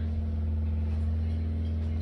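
A steady low hum, like a motor or appliance running, with a fainter higher tone held above it.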